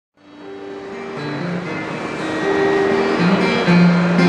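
Acoustic guitar playing the introduction of a song, sustained notes changing every half second or so, fading in from silence just after the start.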